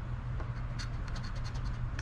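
A coin scratching the coating off a $10 Struck by Luck scratch-off lottery ticket, in short, quiet scrapes.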